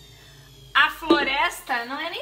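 A woman's voice speaking from about a second in, over a faint low hum that stops near the end.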